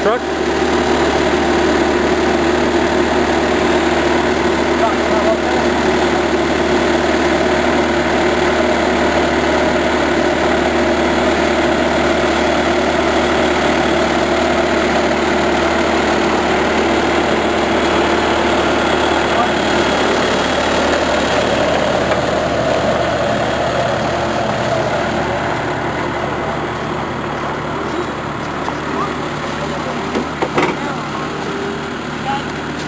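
Engine idling steadily with an even, unchanging pitch, becoming a little quieter over the last several seconds.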